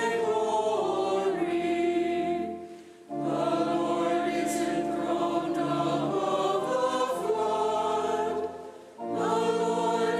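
Choir singing the responsorial psalm of the Mass in long held phrases; the singing fades and pauses briefly about three seconds in and again near the end, each time starting again sharply.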